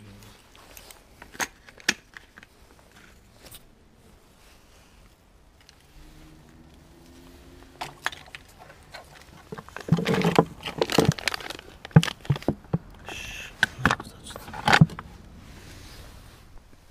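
Hands rummaging through discarded household objects: scattered clicks and knocks, then a busier stretch of clattering and rustling in the second half.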